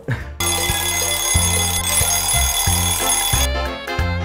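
TV show bumper jingle: a stepping bass line under a steady, ringing alarm-clock bell. The bell stops about three and a half seconds in, leaving the bass.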